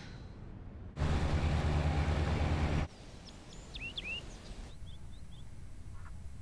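Steady river-traffic ambience of boats on a wide river, a loud rush over a deep rumble. It starts about a second in and cuts off abruptly just under two seconds later. Then a bird chirps several quick, sweeping calls.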